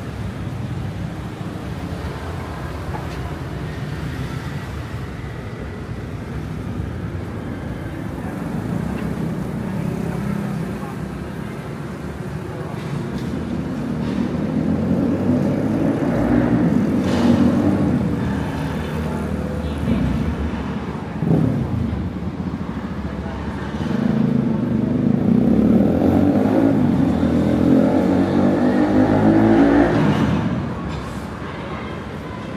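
Road traffic: cars and motorbikes driving past, their engine noise swelling louder about halfway through and again near the end, over a background of people talking.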